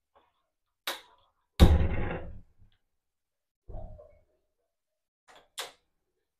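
A metal kadai knocking on the glass top of an induction cooktop as it is set in place: a sharp click about a second in, then a louder short clunk that rings briefly, and a few lighter knocks and clicks later on.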